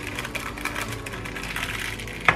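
Thin plastic film crinkling and rustling in quick, irregular crackles as it is lifted and folded with a frozen paratha, over faint background music.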